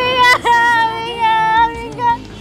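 A high female voice singing long held notes over a faint steady accompaniment, with a dip in the line about halfway through.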